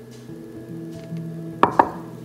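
Background music with sustained tones, and about one and a half seconds in two sharp knocks a fifth of a second apart as the pouring container is put down once the coconut milk is poured over the rice.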